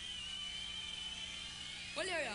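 A single high-pitched tone, held steady with a slight waver over a low steady hum, in a live stage sound mix.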